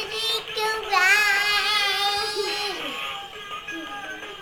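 A young child singing over background music, holding one long wavering note for nearly two seconds.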